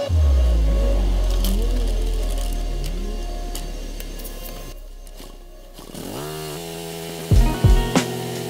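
Background music: a deep bass note that fades slowly over several seconds under a wavering melodic line, then a falling sweep and strong bass beats near the end.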